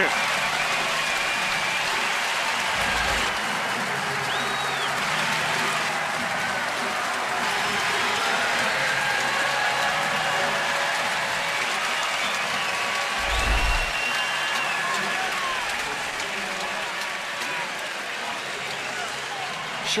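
Baseball stadium crowd cheering and applauding a home run: a steady roar of cheers and clapping that eases slightly near the end.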